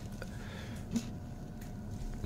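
Faint shuffling and a few soft clicks of steel bars being pushed down into charcoal inside a steel canister, the clearest click about a second in, over a low steady hum.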